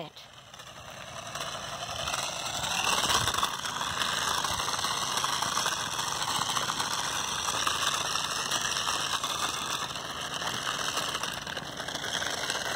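A toy-grade New Bright 1/24-scale RC truck driving over loose pebbles: its small electric motor and plastic gearbox whir and rattle as the tyres roll over the stones. The sound builds over the first two seconds, then holds steady.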